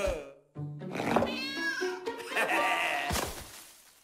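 Cartoon soundtrack: music with wordless, gliding cartoon-character vocal sounds, and a short thud about three seconds in.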